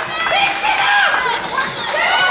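Sounds of a basketball game in a large hall: several voices calling and shouting over one another, with a ball bouncing on the hardwood court.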